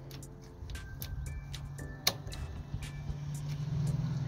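Light rain: scattered drips ticking at irregular moments over a steady low hum.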